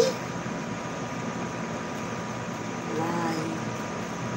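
Steady room-noise hiss with a faint steady tone, and a short hummed vocal sound from a woman about three seconds in.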